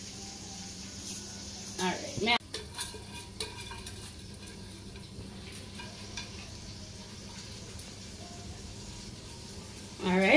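Washed rice being tipped from a metal pot into a pot of boiling coconut-milk liquid, with a few sharp taps and knocks of metal on metal a little after two seconds in, then a steady simmering hiss from the pot.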